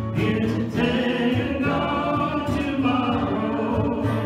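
A small worship group singing a gospel song together, several voices at once, to acoustic guitar.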